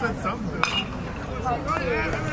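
Metal baseball bat striking the ball once, a sharp ping a little over half a second in, over background crowd chatter.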